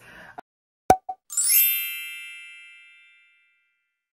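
A short pop, then a bright chime ding that rings out and fades away over about two seconds: an intro sound effect.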